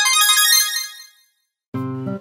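A bright, high-pitched chime sound effect: a quick cluster of high notes that starts sharply and fades out within about a second. Near the end, guitar background music begins.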